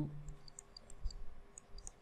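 Faint, scattered small clicks and taps from a stylus or pen on a writing tablet, with a soft low thump about a second in. A man's voice trails off at the start.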